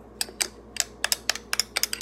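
A metal spoon stirring coffee in a drinking glass, clinking against the glass in quick, irregular taps, several a second.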